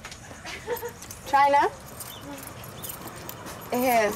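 Speech: a woman's voice calls out "China?" once, about a second in, over faint clicks and knocks; more talk begins near the end.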